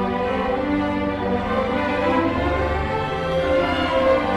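String orchestra of violins, violas, cellos and double basses playing live, with sustained bowed chords over low bass notes that change every second or so.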